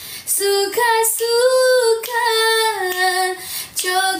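A woman singing unaccompanied, without backing music, in long held notes that bend gently in pitch, with short breaks for breath.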